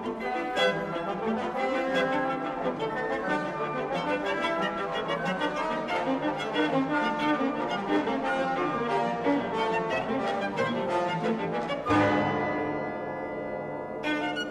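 Orchestral classical music with violins and brass, busy and rhythmic, with a sudden loud accented chord about twelve seconds in that then dies away.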